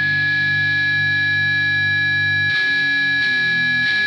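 Heavily distorted electric guitar holding a droning chord under a steady high-pitched whine, with no drums; the low notes shift about two and a half seconds in.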